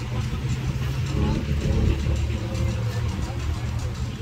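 A motor vehicle's engine idling, a low steady rumble, with faint voices mixed in.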